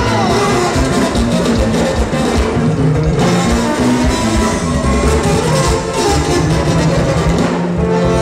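Loud live band dance music in the Tierra Caliente style, with drums and a steady bass line.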